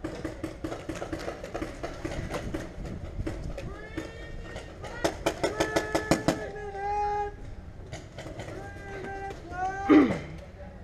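Paintball markers firing in strings of sharp pops: a steady run of shots in the first few seconds and a faster burst about five seconds in. Players shout across the field in between, with a loud shout at the very end.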